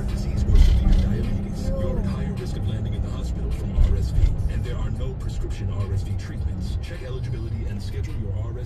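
Car cabin noise while riding in traffic: a steady low rumble of engine and tyres, with faint voices underneath and a couple of low bumps, about half a second in and again near four seconds in.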